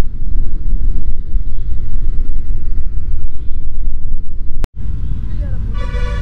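Riding noise from a Triumph Speed 400 motorcycle under way: a loud, heavy rumble of wind buffeting the microphone over engine and road noise. It cuts off abruptly near the end, leaving a quieter rumble as a voice begins.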